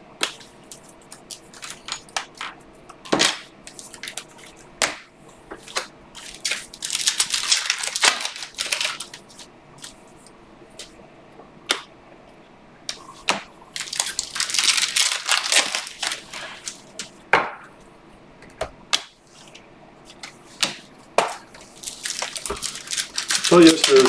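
Stiff, glossy Panini Optic football cards handled and flipped by hand: sharp clicks and snaps as cards are tapped and flicked, with three bursts of rustling as cards slide across one another while a stack is shuffled through.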